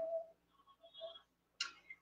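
A quiet pause in a woman's speech: her last word trails off, a few faint soft sounds follow, and a short breath comes just before she speaks again.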